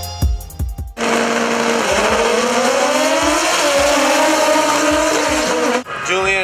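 Background music with drums, then about a second in an abrupt cut to a high-revving racing four-cylinder engine at full throttle. The engine holds a steady high note, then climbs in pitch with two brief dips, and cuts off suddenly just before the end.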